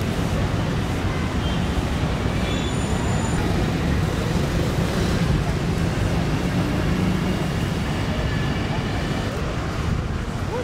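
Steady city street ambience: traffic noise with a constant low engine hum and indistinct voices, and a few faint high whistles about three seconds in.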